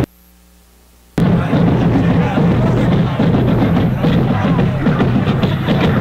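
Choppy livestream audio: it cuts out to a faint low hum for about a second, then comes back loud with music with a drum beat and voices.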